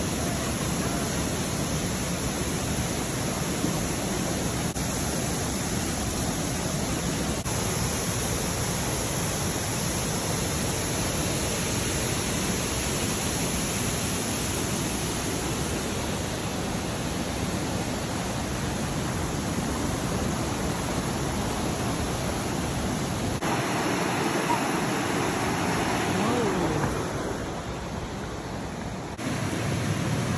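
Waterfall and rocky mountain stream rushing steadily, as one even roar of falling water. It changes abruptly about three-quarters of the way in and drops a little in level near the end.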